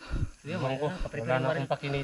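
Speech only: a man talking, with no other clear sound.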